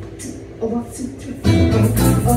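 Live acoustic string music from a fiddle and a small acoustic guitar: a quiet passage of plucked notes, then about a second and a half in the strummed accompaniment comes in much louder.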